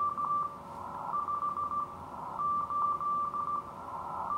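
Morse code (CW) signal from a ham station on the 40-meter band, received on an RTL-SDR through an upconverter and heard as one steady high tone keyed in dots and dashes. The keying comes in groups with short pauses between them, over faint receiver hiss and a fainter lower hum.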